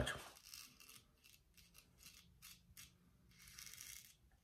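Faint scraping of a straight razor (an Economy Supply 800) cutting stubble through lather on the cheek, in short repeated strokes a few times a second.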